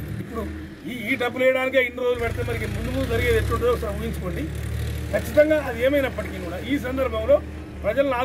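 A man speaking Telugu in an address to press microphones, over a steady low rumble.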